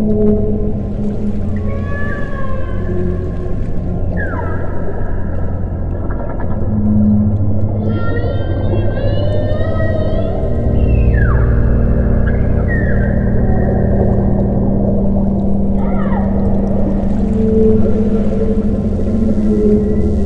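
Whale calls over an ambient drone of steady, held low tones. Several long, gliding moans fall in pitch, and a warbling higher call runs for about two seconds around eight seconds in.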